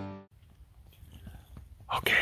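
Strummed acoustic guitar music fading out in the first instant, then faint outdoor quiet with scattered small clicks and rustles close to the microphone, and a whisper starting right at the end.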